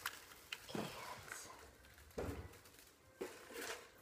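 Faint, irregular rustling of pink shredded Easter grass being pulled out by hand, with a few soft handling knocks.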